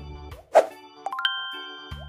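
Light background music with a short cartoon pop sound effect about half a second in, followed by a quick rising run of chime notes that keep ringing.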